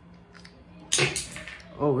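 A single sharp click of small hard parts of a screw-on accessory mount being worked loose by hand, about a second in.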